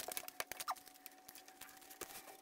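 Aluminium foil wrapper crinkling and crackling in small irregular clicks as a food wrap is handled on it.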